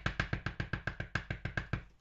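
Clear acrylic block with a photopolymer stamp tapped rapidly on a StazOn ink pad, about nine quick even taps a second, to load the stamp with ink. The tapping stops shortly before the end.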